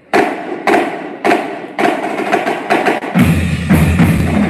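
School drumline of snare drum, tenor drums, bass drum and crash cymbals starting to play, with loud accented hits about every half second and quicker strokes between them. A deeper, steadier low sound joins about three seconds in.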